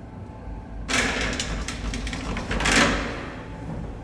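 Collapsible steel scissor gate of an old KONE elevator car being drawn shut: a metallic rattling scrape starting about a second in, lasting about two seconds and loudest just before it stops.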